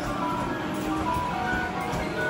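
Overlapping electronic jingles and beeping tunes from arcade game machines, a dense mix of short melodic notes.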